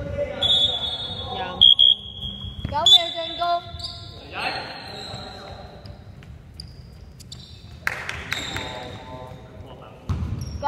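Short, high, shrill whistle blasts a few times in the first four seconds, the loudest around two and three seconds in: a referee's whistle stopping play in an indoor basketball game. Players' shouts and the thud of a basketball on the hardwood floor echo in the large gym.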